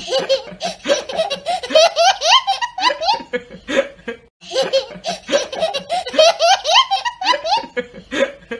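A young child laughing hard, peal after peal of giggles, breaking off briefly about four seconds in and then starting again.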